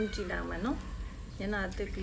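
A woman talking, her voice rising and falling in pitch.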